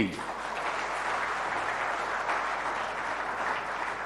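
An audience applauding, an even spread of clapping that holds steady for about four seconds.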